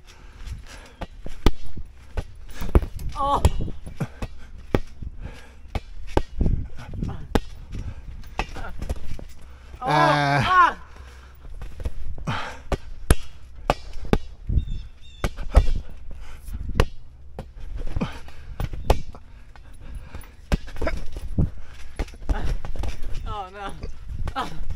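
Irregular thumps of people bouncing barefoot on a trampoline mat and hitting a large inflatable ball back and forth, with a short burst of voice about ten seconds in.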